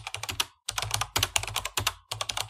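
Computer keyboard typing sound effect: a fast run of key clicks, about ten a second, with a short break about half a second in.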